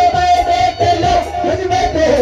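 Live qawwali: a group of men's voices singing loudly together over the ensemble's accompaniment, with crowd noise.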